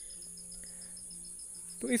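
Crickets trilling steadily and high-pitched, with a faint, fast, evenly spaced pulse beneath the trill.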